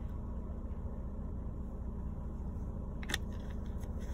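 Car engine idling, heard from inside the cabin as a steady low rumble, with a single sharp click about three seconds in.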